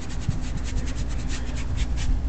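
A flat bristle brush scrubbing oil paint onto canvas in quick, scratchy strokes, about a dozen a second, with a short lull about a second in. A steady low rumble lies underneath.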